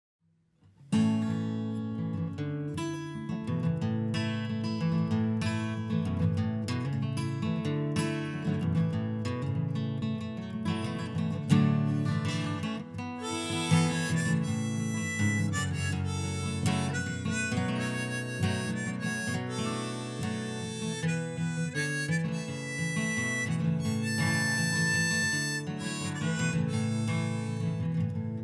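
Acoustic guitar strummed in a steady rhythm, with a harmonica played from a neck rack joining about halfway to carry the melody over it: the instrumental intro of a folk song.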